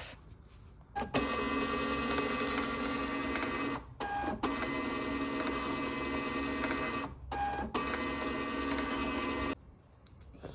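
Desktop thermal label printer running as it feeds out barcode shipping labels: a steady mechanical whine in three runs, with two brief pauses about 4 and 7.5 seconds in.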